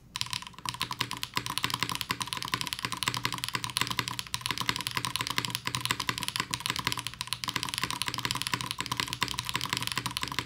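Custom mechanical keyboard with HMX Jammy switches on a plate with plate foam, typed on continuously and fast, many keystrokes a second, resting directly on the desk without a desk pad.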